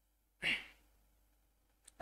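A man's single short breath out, like a sigh, about half a second in; otherwise near silence, with a faint click near the end.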